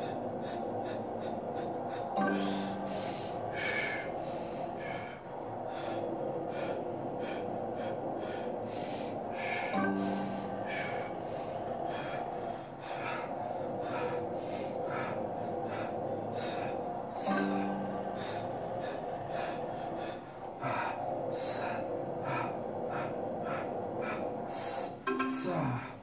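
A man breathing hard under strain, with sharp forced exhalations and gasps at irregular intervals as he pushes a leg press toward muscle failure, over steady background music.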